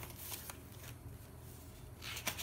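Faint rustling of paper as hands slide over and handle the pages of a thick, well-used sketch journal, with a couple of light clicks of paper near the start, over a steady low hum.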